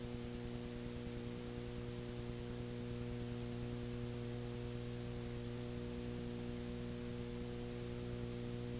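Steady electrical mains hum with an even layer of hiss, and nothing else.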